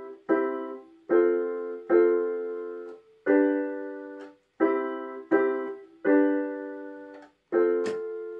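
Electronic keyboard with a piano voice, playing about eight block chords one after another, each struck sharply and left to fade before the next.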